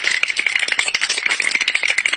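A fast, dense, steady rattle of rapid clicks with a bright, ringing edge, like teeth chattering or something shaken hard.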